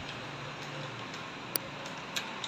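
A single sharp mouse-click sound effect about one and a half seconds in, as the subscribe button is clicked, over faint steady room noise.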